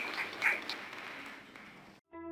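Audience applause dying away, with a few last scattered claps about half a second in, fading almost to silence by the end.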